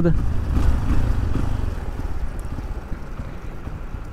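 Motorcycle running at low speed, heard from the rider's seat: a low, even rumble that grows gradually quieter.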